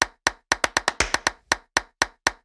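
A short percussion transition sting of sharp clap-like hits, about four to the second with quick extra hits between the beats.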